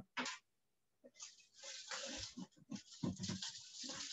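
Rustling and scraping with a few light knocks as an animal's container is handled and a blue-tongued skink is lifted out. It starts about a second in and goes on irregularly after that.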